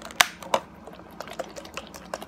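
Small plastic sauce cup and its lid handled close to the microphone: two sharp clicks near the start, then a few lighter ticks.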